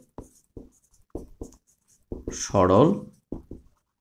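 Marker pen writing on a whiteboard: a run of short separate strokes as letters are written, with a man's spoken word partway through.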